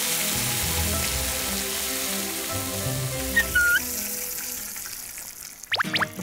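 Beef short ribs sizzling in butter in a hot pan, the sizzle fading out over the last couple of seconds, under background music.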